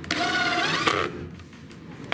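Makita cordless drill driving a screw into plywood: about a second of motor whine that rises slightly in pitch just before it stops.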